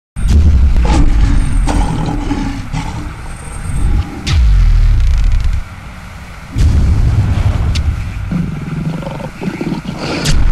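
Cinematic title-sequence sound effects: heavy low rumbling swells punctuated by several sharp hits, dropping away briefly past the middle before building again.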